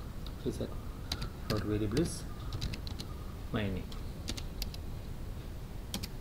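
Computer keyboard typing in irregular keystrokes as a line of code is entered. Brief murmured voice sounds fall about half a second in, around the second mark and near the middle.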